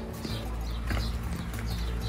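Footsteps going down stone steps: a few irregular treads on stone.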